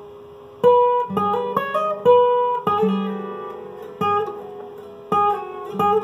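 Steel-string acoustic guitar playing a lead melody of single plucked notes, about ten in all, each ringing on as it fades. Some notes follow each other quickly, as hammer-ons.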